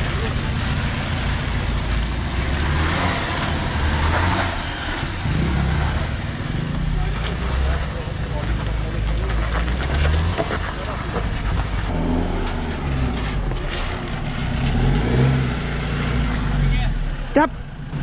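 Off-road 4x4 engines running at low revs, with a steady low rumble, as they drive through shallow water on a muddy riverbed. A single sharp knock comes near the end.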